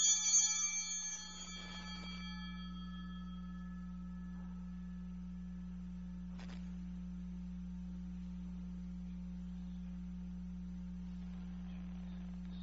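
Altar bells ringing at the elevation of the chalice during the consecration, their ringing dying away over the first two or three seconds. After that only a steady low hum remains, with one faint click about six and a half seconds in.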